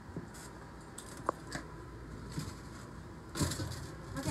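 Quiet handling sounds as kitchen items are moved on a counter: light taps, clicks and scrapes, with one sharp click a little over a second in and a louder rustling stretch near the end.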